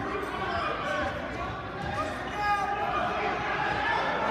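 Echoing gymnasium noise during a wrestling bout: scattered voices from the crowd and mat side, with dull thuds from the wrestlers' feet and bodies on the mat.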